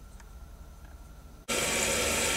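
Low room tone, then about one and a half seconds in a toilet is flushed and the tank water rushes steadily through the raised flapper into the bowl.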